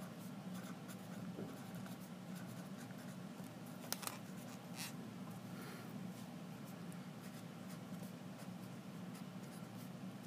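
Faint scratching of a felt-tip pen writing on a paper worksheet, over a steady low room hum, with two light ticks of the pen near the middle.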